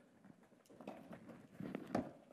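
Faint footsteps and shoe scuffs of tennis players moving on an indoor court, with a couple of light knocks near the end.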